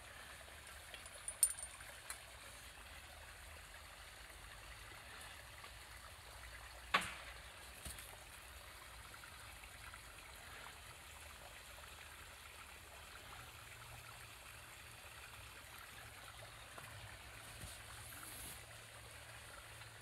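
Faint, steady rushing of running water like a nearby stream, with a few short sharp clicks about a second and a half in and again about seven seconds in.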